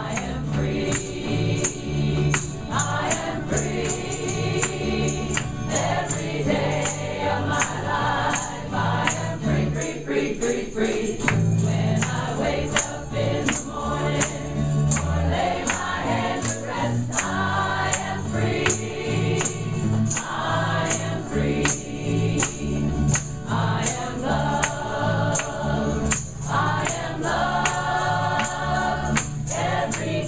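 Small gospel choir singing together with a live band: electric bass underneath and a tambourine struck on a steady beat.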